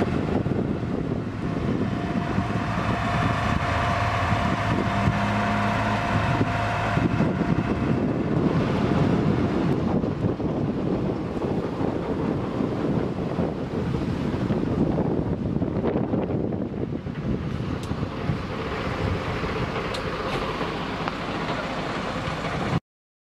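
Wind buffeting the microphone, mixed with road traffic, as a steady noise; a small van drives past close by at the start.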